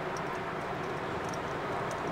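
Steady road noise of a car driving at highway speed, heard from inside the cabin.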